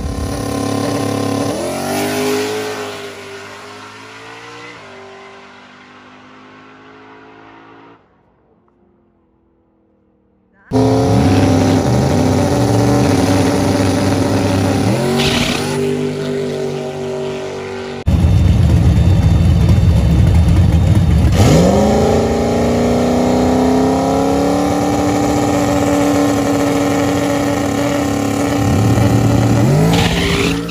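Turbocharged 4.6-litre two-valve V8 of a New Edge Mustang GT drag car at high revs in several cut-together clips. First it climbs in pitch through the gears as it pulls away and fades. Then, after a brief near-silent gap about eight seconds in, it is loud again with repeated sharp revs and a long steady high-rpm hold.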